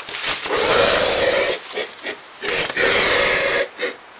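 Black vulture chick giving two long, raspy hissing grunts, each a little over a second, with short huffs after each: the noisy begging sound of a vulture nestling being fed.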